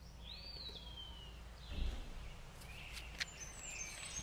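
Faint outdoor ambience over a steady low rumble. A bird gives one call a quarter second in that rises, then glides slowly down, and a few faint chirps follow near the end. A low thump comes near the middle.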